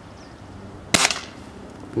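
A .177 Remington Vantage air rifle firing a single shot, a sharp crack about a second in with a short tail.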